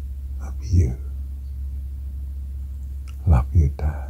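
Soft, whispered speech fragments, a short one about a second in and a few more near the end, over a steady low hum.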